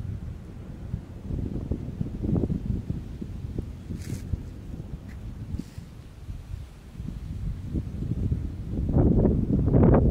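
Storm wind gusting against a phone's microphone, a low rough buffeting that swells loudest in the last second or two.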